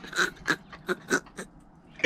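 A man's breathy laughter: a run of short exhaled bursts, about three a second, that dies away about one and a half seconds in.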